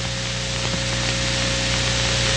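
A steady hiss-like noise slowly growing louder, over a low hum.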